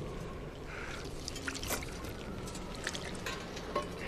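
Quiet outdoor film ambience: a soft steady hiss with a few scattered small clicks and rustles.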